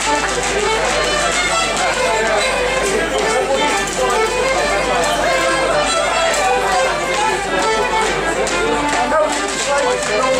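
A fiddle playing a traditional tune for rapper sword dancing, with quick-moving notes throughout.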